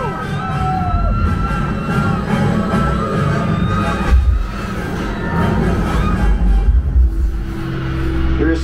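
Ride soundtrack of a simulated escape-pod crash landing: music over a heavy, surging low rumble of the pod's descent, with one sharp impact about four seconds in.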